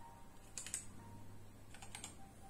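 Typing on a computer keyboard: a quick cluster of key clicks about half a second in and another cluster near the end, over a faint steady hum.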